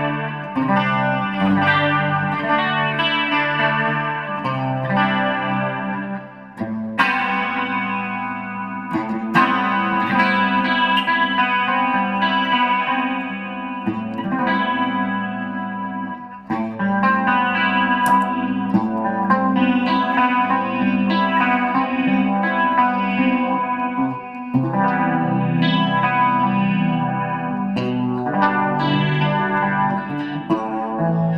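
Gibson Les Paul Studio electric guitar played through the Bassman channel of a Fender Supersonic amp, with chorus and reverb from a pedalboard. He plays a run of chords and single notes, with short breaks about six, sixteen and twenty-four seconds in.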